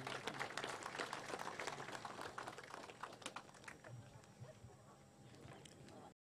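Audience applause of many scattered hand claps, thinning out and fading away.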